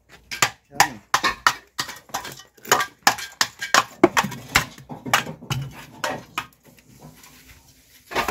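Steel mason's trowel striking hollow ceramic bricks and scraping mortar: a fast, irregular run of sharp clinks and knocks as a brick is chopped to size and tapped into its mortar bed, dying down in the last second or so.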